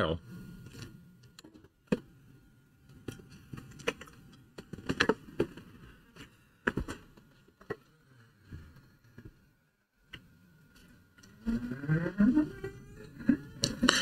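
Mostly quiet room with a handful of short, light clicks and taps spread over the first several seconds, then a voice talking in the last couple of seconds.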